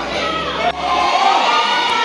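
Many children's voices chattering and calling out in a large hall. About a second in, a sudden cut gives way to a group of voices singing together in long held notes.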